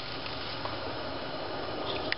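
Steady hiss of a pot of salted, sugared brine heating on the stove just short of the boil.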